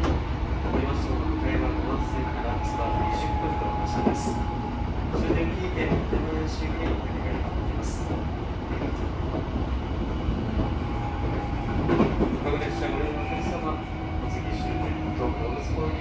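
Tokyo Metro 13000 series commuter train heard from inside the car while running: a steady low rumble of wheels on track, with faint held tones and scattered light clicks.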